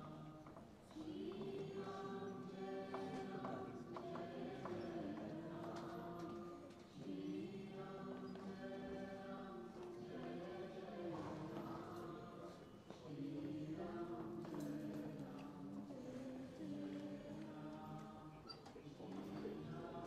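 Group of voices singing slowly together in long held phrases of about six seconds each, with short pauses between phrases.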